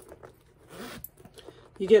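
Metal zipper on the front pocket of a pebbled-leather Coach Nolita 24 bag being pulled, a short faint rasp just under a second in, with a few light handling clicks around it.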